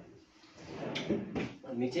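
A wardrobe drawer pushed shut by hand: a short sliding rush that ends in a light knock about a second and a half in.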